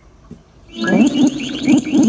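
Amazon Echo Dot smart speaker giving out a loud electronic warble of rapid rising chirps, about five a second, starting under a second in. It is the odd response that the owner calls the speaker acting weird.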